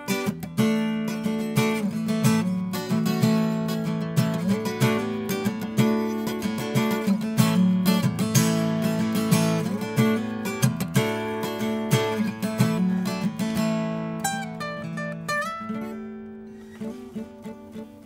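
Koa-topped Taylor GS Mini-e acoustic guitar strummed in a steady rhythm, its chords ringing. Near the end it plays a few single notes and lets the last sound fade out.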